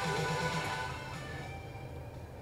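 Music playing from a retro-style aftermarket car radio through the car's speakers, fading down in the second half as the volume knob is turned down.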